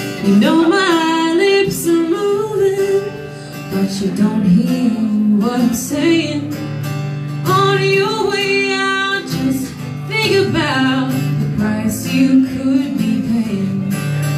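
Live country song: a woman singing in phrases over two strummed acoustic guitars.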